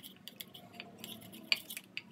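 A metal spoon stirring a thick creamy mixture in a small bowl, with light clicks and scrapes of the spoon against the bowl. The sharpest tick comes about one and a half seconds in.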